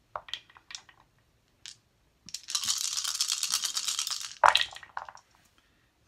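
A handful of Elder Sign dice shaken for about two seconds, then thrown into a felt-lined wooden dice tray: one sharp hit and a short clatter as they settle. A few light clicks of the dice being gathered come first.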